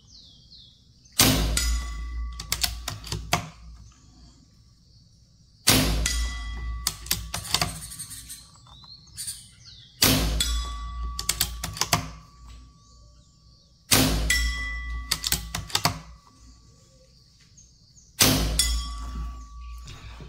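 Artemis T-Rex 5.5 mm PCP air rifle fired five times, about four seconds apart; each shot is a sharp report followed by the clang of a steel plinking target being hit at 50 m, ringing and rattling for a second or two.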